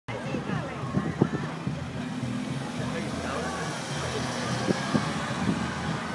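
Indistinct chatter from several voices in a street crowd, over the steady low running of slow-moving vehicles: a van, a car and a bus driving past at walking pace.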